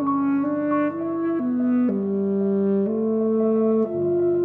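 Classical saxophone playing a slow melodic line of held notes, each half a second to a second long, stepping from pitch to pitch, from a sonata for saxophone and piano.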